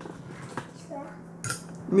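A few light clinks of dishware being handled, the clearest about a second and a half in.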